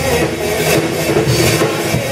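Live band music: a rock song with drums and sustained pitched instruments, played loud and steady.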